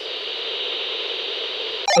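Steady electronic static hiss with a faint steady tone beneath it, with no key clicks in it. It starts abruptly and cuts off suddenly just before the end.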